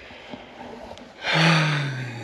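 A person's breathy, drawn-out exhale, falling slowly in pitch, starting more than a second in after a faint hush.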